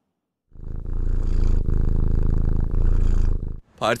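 A 19-year-old domestic cat purring close to a microphone: a steady, low, fine-grained purr that starts about half a second in and stops shortly before the end.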